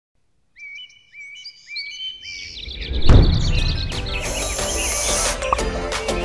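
Birds chirping in short repeated high calls, then a deep boom hits about three seconds in and background music with a steady beat takes over.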